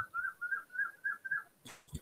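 Faint run of about seven short, high chirps, about four a second, stopping about a second and a half in.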